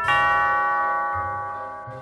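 Two-note ding-dong doorbell chime: the second, lower note strikes right at the start and rings on, fading slowly.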